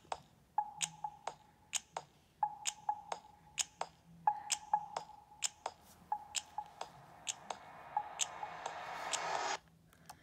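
A repeated electronic beep, one held tone about every two seconds, with sharp irregular clicks between the beeps. Over the last two seconds a hiss swells up and then cuts off suddenly.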